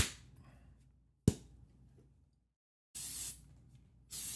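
Two sharp knocks of hard 3D-printed plastic parts being handled, about a second apart. Near the end comes a short hiss of about half a second.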